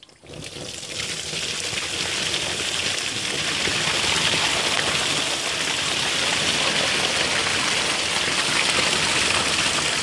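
Water gushing out of a tipped plastic drum onto a plastic sheet, starting at once and building over the first couple of seconds into a steady flow.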